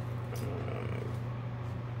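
A steady low hum, with a faint click about half a second in.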